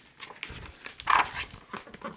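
Paper rustling as a picture-book page is turned by hand: a few short rustles, the loudest about a second in.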